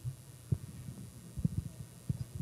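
Irregular low thumps over a faint low hum: footsteps of people walking up to the front, picked up by the microphone.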